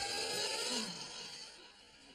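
Strummed guitar music ending: the last chord rings on and fades out over about a second and a half, leaving faint room tone.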